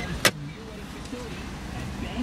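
Two sharp clicks about a quarter of a second apart, then a quiet, steady hiss.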